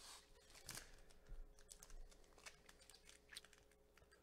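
Faint, scattered crinkles and ticks of foil trading-card pack wrappers being handled by hand.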